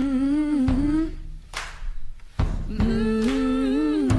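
A person humming a tune in two long, gently wavering phrases, with a few sharp knocks in the gap between them.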